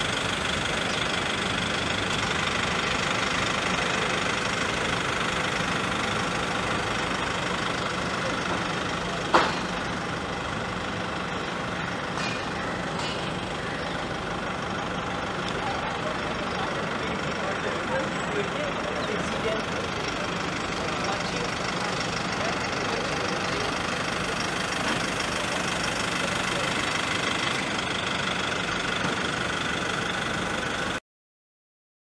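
A steady mechanical hum, like an idling engine or machinery running, over outdoor background noise. One sharp knock comes about nine seconds in.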